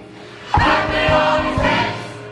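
Gospel choir singing with accompaniment, the full choir coming in loudly on a new phrase about half a second in after a brief lull.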